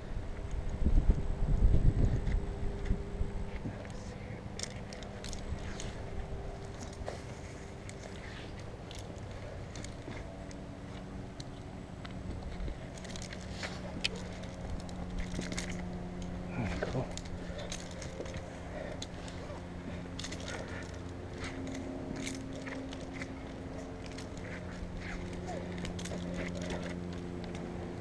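A climber ascending a rope on a hitch and rope-wrench system, heard from a head-mounted camera: heavy bumping and rubbing against the microphone in the first few seconds, then scattered small clicks and scrapes of rope and hardware over a steady low hum.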